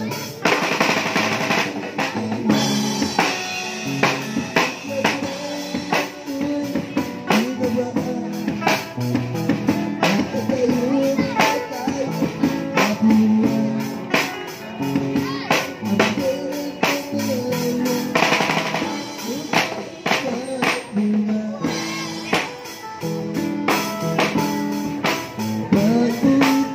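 Acoustic drum kit played live in a steady beat, with bass drum, snare and cymbal hits and occasional fills. Under the drums runs a song with a sung melody and guitar.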